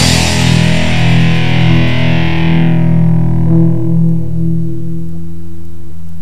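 A crossover thrash song ends on a distorted electric guitar chord left to ring out. Its bright top fades away over several seconds while the low notes keep sounding, until it cuts off suddenly.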